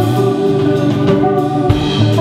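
Live rock trio: electric guitar and electric bass playing over a drum kit, with held guitar notes and drum and cymbal hits.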